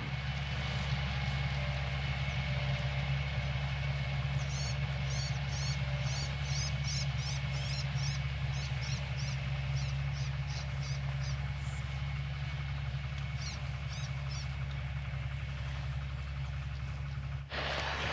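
Steady low engine hum running throughout. Over it a bird gives a series of short, high chirps, a few a second, from about four seconds in to about eleven seconds, and again briefly near the end.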